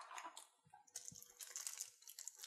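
Faint crinkling and rustling of plastic packaging as a shrink-wrapped deck of cards is slid out of its plastic box tray and handled, thickening into a steady crinkle about halfway through.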